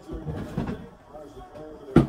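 A man's voice singing softly under his breath while he rummages, then a single sharp knock just before the end.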